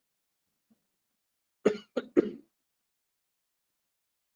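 A man's throat-clearing cough: three quick bursts close together about a second and a half in.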